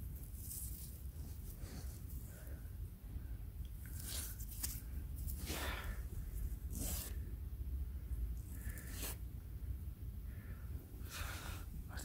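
Faint scratching and crumbling of soil as fingers rub dirt off a small, earth-caked doll's head, a series of short scrapes spread through, over a low steady rumble.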